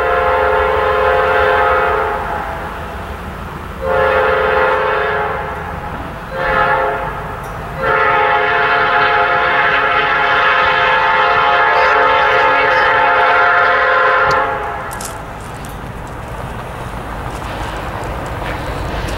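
Nathan Airchime P5 air horn on a Norfolk Southern GE AC44C6M locomotive sounding the long, long, short, long grade-crossing signal, the last blast held longest and stopping about three-quarters of the way through. Under and after the horn the low rumble of the approaching train carries on.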